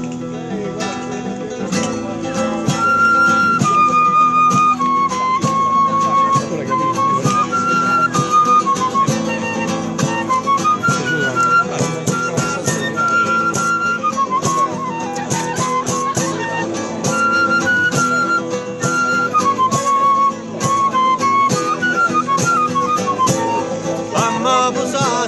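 A clarinet playing a melody of stepwise, held notes over a strummed acoustic guitar.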